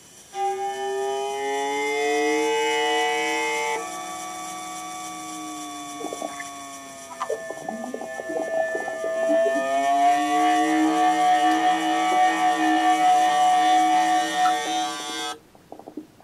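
Electronic synthesized tones from a sensor-controlled MaxMSP instrument: several held pitches sounding together and sliding slowly in pitch. In the middle they turn quieter, with scattered clicks and a low upward glide, then swell again before cutting off suddenly near the end.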